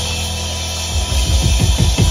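Live rock band playing an instrumental passage with no singing: a held chord over a sustained bass note, then a quick run of drum hits starting about a second in, a drum fill.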